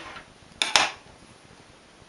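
Two quick metallic clacks in close succession a bit under a second in, from hand tools being handled at a knitting machine's metal needle bed.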